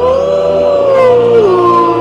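Wolf howling: one long howl that rises at the start, holds, then drops in pitch about a second and a half in.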